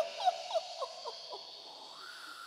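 A run of short hoot-like calls, each sliding down in pitch, about six in quick succession and each fainter than the last like a dying echo, over a faint hiss.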